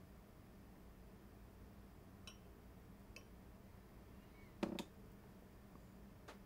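Near silence: quiet room tone with a faint low hum, two faint light clicks in the middle, and one brief louder sound about three-quarters of the way through.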